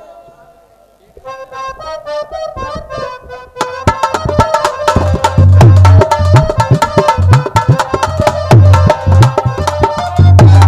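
Live folk-music accompaniment: a harmonium starts a melody about a second in, and hand drums join at about four seconds with loud, quick, steady beats under it.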